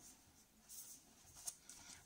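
Faint rustle of paper as a softcover children's activity book is handled and turned over, with a light tap about one and a half seconds in.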